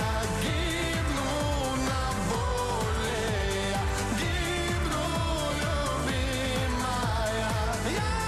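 Pop song: a singing voice carrying a melody over a steady drum beat.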